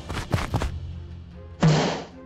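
Cartoon sound effects: a few light clicks at the start, then a sudden loud, harsh noise burst about half a second long near the end, over a low steady hum.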